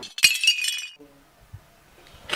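Brief sound of glass shattering and tinkling, lasting under a second.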